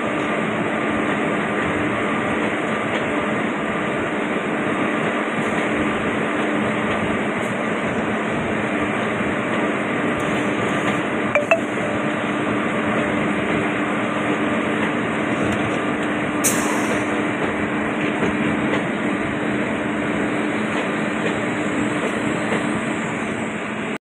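The Andaman Express's passenger coaches rolling past a station platform: a loud, steady rumble and rattle of wheels on the rails, with a couple of brief sharp clinks near the middle.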